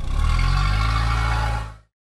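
A loud motor-like whir that rises slightly in pitch, runs for almost two seconds and then fades out.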